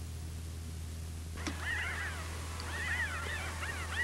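A steady low hum, joined about a second and a half in by birds chirping in short, repeated rising-and-falling notes.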